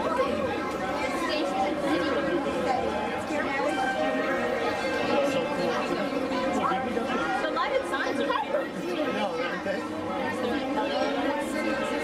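Indistinct chatter of many people talking at once in a room, steady throughout, with no single voice standing out.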